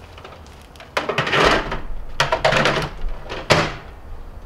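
Plastic toy blasters knocking and scraping as they are pushed into a microwave oven. Then the microwave door shuts with one sharp clack near the end.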